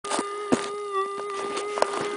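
Minelab metal detector's steady threshold hum, one mid-pitched tone that wavers slightly about halfway through, with a few sharp clicks over it.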